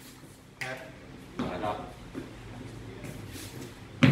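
Dancers' shoes scuffing and tapping on a wooden floor, with a short voice sound about one and a half seconds in.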